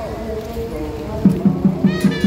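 Daoist ritual music: a wavering melodic line, then about a second in a steady fast percussion beat starts, about five strokes a second.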